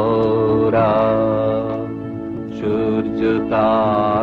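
A Bengali song sung solo: long, slow held notes with vibrato over a steady drone accompaniment, with a short lull in the middle before a new phrase begins.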